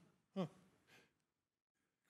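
A man's short "huh" about half a second in, then near silence.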